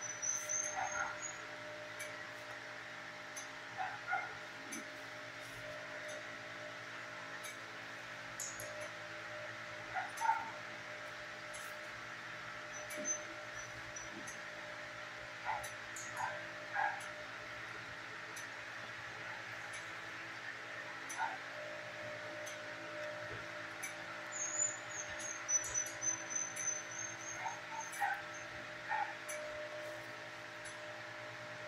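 Dogs in a shelter kennel giving short, scattered yips and barks a few seconds apart, with a livelier cluster near the end, over a steady background hum.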